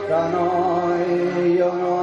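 A man singing karaoke into a handheld microphone, holding one long, slightly wavering note over a backing track.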